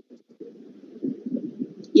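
Faint, muffled low murmur coming over a video-call audio line, in short irregular fragments, with a brief drop-out just after the start.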